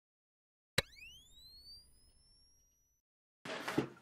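A sharp click followed by an electronic tone that sweeps quickly upward in pitch, levels off and fades over about two seconds. A man starts talking near the end.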